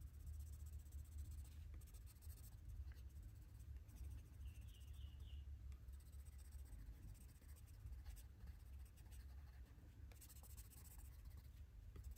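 Faint scratching of a Prismacolor Premier wax-based coloured pencil stroked lightly over paper to shade a background. The strokes come in spells, loudest near the start and again near the end.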